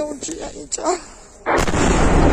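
A drone exploding: a sudden heavy boom about a second and a half in, followed by a continuing deep rumble, strong enough to shake the house.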